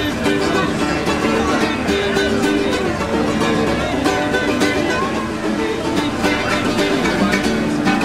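Acoustic guitar being strummed in a steady rhythm, with no singing.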